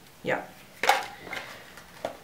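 A single sharp knock a little under a second in as a small item is put down, followed by faint handling noise.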